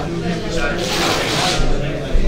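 Indistinct talk among several people in a large hall, with a brief noisy scrape or hiss about a second in.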